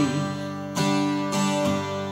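Acoustic guitar strumming chords, with a couple of fresh strokes ringing on in a pause between sung lines.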